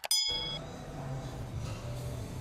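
A click sound effect followed by a short bell-like ding that rings for about half a second at the start, the sound of the animated subscribe-button and notification-bell overlay. A steady low hum runs underneath.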